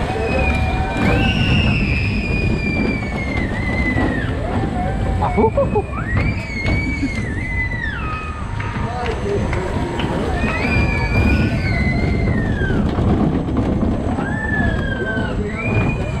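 Wind buffeting the microphone of a rider on a swinging Zamperla Air Force flying ride. Over it come several long, high-pitched cries, each about a second or two long and falling away at the end.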